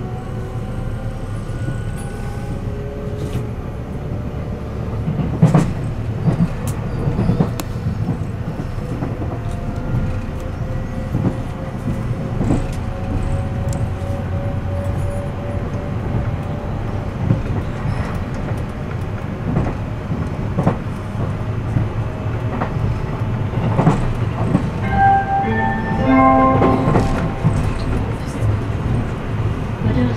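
Electric train heard from inside the carriage while running: a steady low rumble of wheels on rail with scattered knocks from the track, and a motor whine that slowly rises in pitch over the first half. Near the end a few short tones at different pitches sound.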